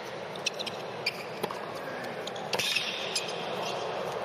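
Tennis rally on a hard court: a few sharp hits and bounces of the ball, spread about a second apart, with the loudest about two and a half seconds in, over steady arena background noise.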